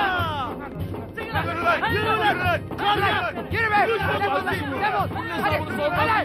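Several men shouting and yelling over one another, with no clear words, over background music.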